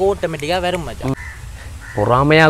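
A man talking for about a second. In the pause that follows come two faint, short bird calls.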